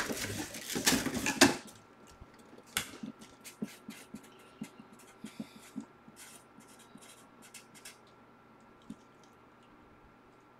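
Handling noise at a desk: a loud rustle for the first second and a half, then scattered light clicks and taps that die away about eight seconds in.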